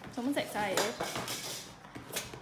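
A small fluffy dog yowling and whining excitedly in a wavering pitch, with a few light clinks.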